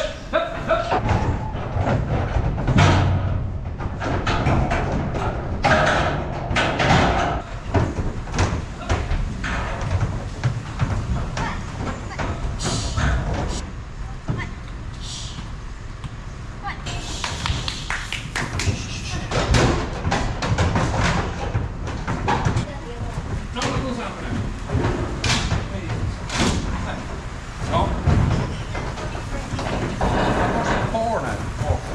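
Repeated thumps and clangs as calves are loaded into a livestock trailer: hooves on the trailer's ramp and floor, and steel pen gates banging.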